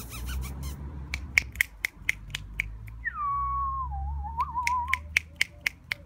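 Fingers snapping in a quick run, about four snaps a second, to draw puppies' attention. Midway the snaps pause for about two seconds while a high tone falls and then wavers.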